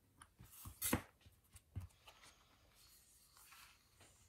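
Quiet craft-knife cutting and paper handling: a few short taps and clicks as a sticker is cut out on a sticker sheet, the loudest about a second in, then a faint rustle as the sheet is lifted and peeled back.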